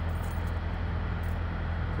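Steady low drone of idling diesel semi-truck engines.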